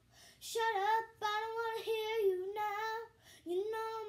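A young girl singing unaccompanied, holding sustained notes in short phrases with brief breaks between them.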